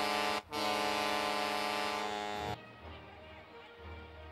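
Loud, steady arena horn blast: one long, unwavering reedy tone, broken for an instant about half a second in and cutting off abruptly about two and a half seconds in, leaving quieter arena background.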